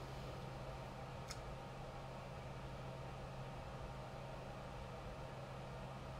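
Low steady hum over faint hiss, with a single faint click a little over a second in.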